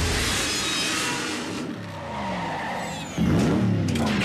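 Cartoon action sound effects of a car engine revving and tyres skidding, with a sudden louder surge about three seconds in.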